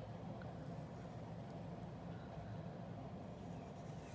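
Quiet, steady room tone: a low hum with no distinct events.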